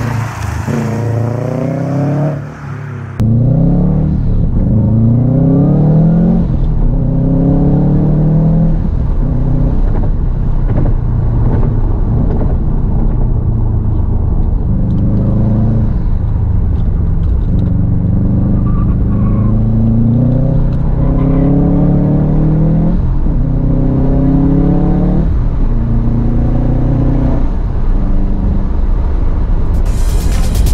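Subaru Impreza STi's turbocharged flat-four boxer engine accelerating hard, its note climbing in pitch and falling back again and again. The sound gets suddenly louder a little over three seconds in.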